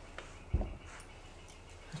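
Quiet handling of small valve-train parts on a cylinder head: a light click, then one short dull thump about half a second in.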